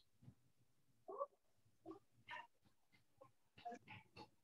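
Near silence: faint room tone with a few brief, faint pitched sounds in the background.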